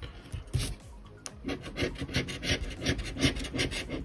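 A coin scratching the silver coating off a scratch-off lottery ticket: short rasping strokes, a few at first and then a rapid, even run of about five a second from about a second in.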